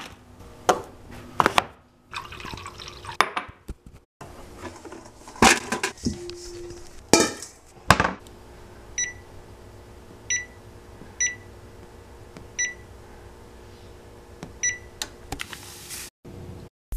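Kitchen clatter as items are handled and a cabinet door is opened and closed, with sharp knocks through the first half. Then come five short, high electronic beeps from a kitchen appliance's keypad, spaced a second or two apart.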